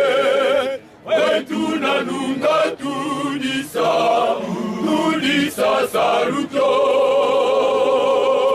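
Male choir singing a cappella. Long notes with vibrato are held at the start, then a run of shorter sung syllables with a brief break near one second in, and a long held chord again from about six and a half seconds in.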